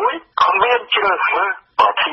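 Speech only: a Khmer-language radio news reader talking.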